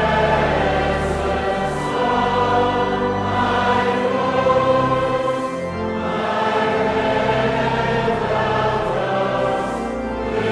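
A choir singing a slow gospel hymn, held notes over long low notes beneath.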